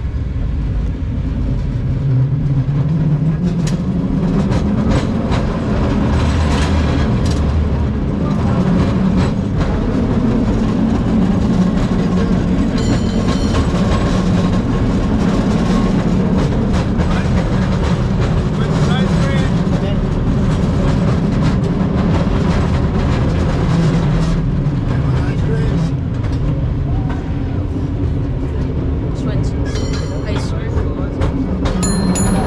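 A San Francisco cable car heard from on board as it runs along its track: a steady rumble with continual clicking and rattling.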